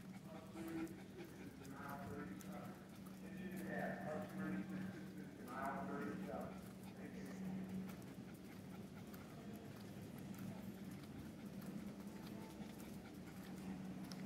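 A dog whining in a few short, pitched cries during the first half, over a steady low hum.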